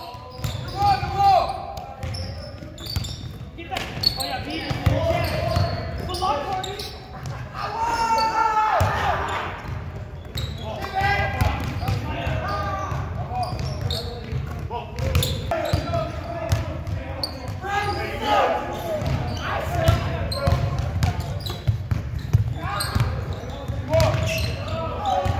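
Basketballs bouncing on a hardwood gym floor during a rebounding drill, echoing in a large gym, with players' voices shouting over the thuds.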